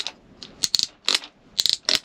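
Ankle-strap ratchet buckle on an Arbor Sequoia snowboard binding, clicking in short runs as the ladder strap is ratcheted through it by hand. The action is not extremely smooth, but it works.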